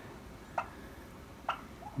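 Turkey hens giving two short, sharp calls, each rising quickly in pitch, about a second apart.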